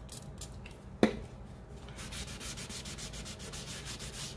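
A foam ink applicator dabs and rubs ink over a paper-collaged cardboard cover in rapid short strokes. There is a single sharp knock about a second in.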